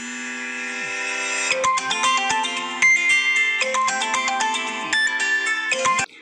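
A mobile phone ringtone: a loud electronic melody of steady held notes that changes note every half second or so. It starts abruptly and cuts off suddenly at the end.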